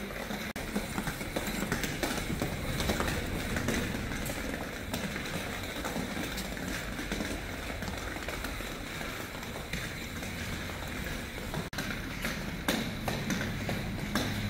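Light taps and clatter of a plastic light-up ankle skip ball bumping along a tiled floor as it is swung around on its cord, mixed with light hopping footsteps at an irregular pace, over steady background noise.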